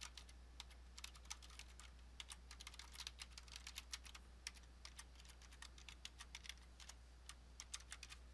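Faint typing on a computer keyboard: quick, irregular runs of keystrokes with a brief pause a little past the middle.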